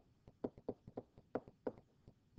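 Stylus tapping and clicking against a tablet screen while handwriting an equation: about a dozen short, light taps at irregular intervals.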